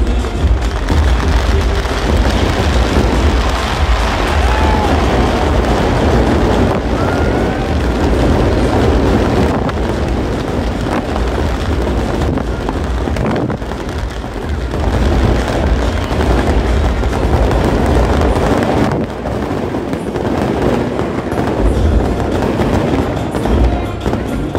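Fireworks going off in continuous crackles and bangs as a firecracker-packed effigy burns, mixed with music.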